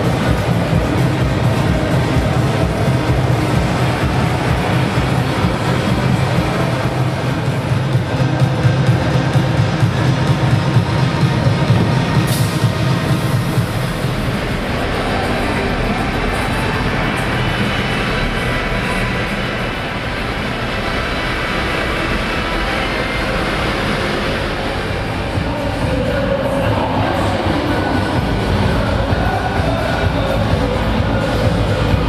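Loud, steady din of a large exhibition hall with music playing through it, a heavy low rumble in the first half that eases off after the midpoint.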